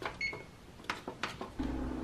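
A single short electronic beep, as from a kitchen range's oven control panel being set, followed by a few light clicks and knocks. A steady low hum comes in about one and a half seconds in.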